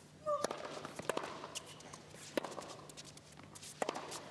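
Sparse, irregular sharp knocks and claps in a tennis arena between points, with a short high call about a quarter second in.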